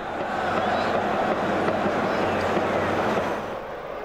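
Steady rushing background noise that eases a little near the end.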